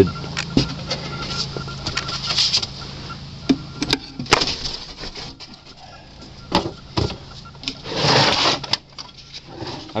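A wooden beehive box filled with sawdust being handled: scattered knocks and clicks of wood on wood, and a rustling scrape of about a second near the end.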